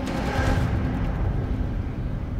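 Jet engine noise from T-38 trainer jets flying over the airfield: a steady low rumble, its upper hiss thinning out less than a second in.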